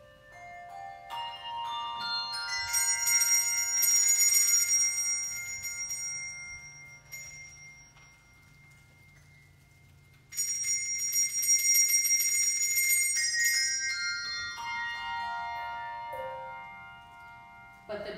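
Handbell choir ringing brass handbells: a rising run of ringing bells builds into a shimmering high cluster that fades away. About ten seconds in a second shimmer starts suddenly and gives way to a descending run of bells that dies out.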